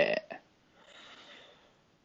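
A man's voice finishing a word at the very start, then a faint, soft hiss for about a second.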